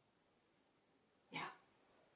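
A West Highland White Terrier gives a single short bark a little over a second in, after near silence.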